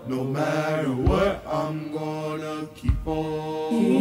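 Youth choir singing a cappella in blended harmony, holding chords that change about every second. A low thump falls about every two seconds, keeping time.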